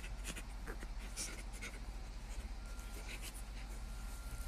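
Quiet close-up rustling of bedding, with a scatter of soft clicks and lip smacks from kisses on a face, over a low steady hum.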